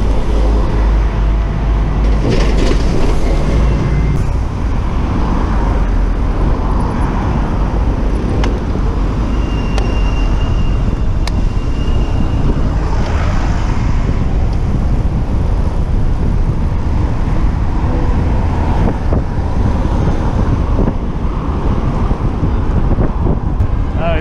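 Steady city road traffic heard from a moving bicycle, with cars and buses passing close by and a heavy low rumble throughout.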